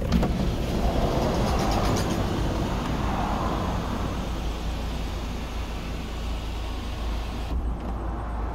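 Electric glass sunroof motor of a Hyundai iX35 running as the panel tilts up and slides back, a steady whirr heard from inside the cabin that stops near the end. Under it, the car's 1.7 diesel engine idles.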